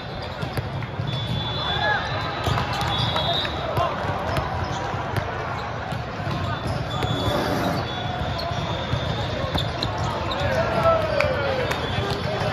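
Echoing din of a multi-court volleyball tournament in a large hall: overlapping voices and shouts, many sharp smacks of volleyballs on hands and the hard floor, and a few short high whistle blasts from referees.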